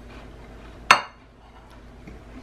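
A plate set down on a kitchen counter: one sharp clink with a short ring about a second in.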